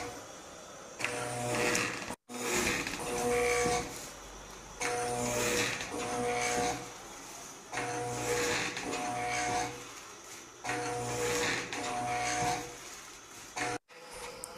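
Electric motor of an automated AMBU-bag ventilator rig running in repeating breath cycles: about every three seconds, two runs of a steady whine about a second long each.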